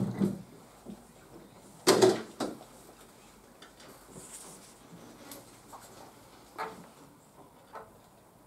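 Furniture noises as a chair is moved and sat in at a classroom table: a knock at the start, a louder clatter lasting about half a second around two seconds in, then a few light taps and clicks, the clearest near seven seconds.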